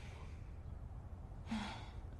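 A woman's breathy sigh near the end, over faint low room hum.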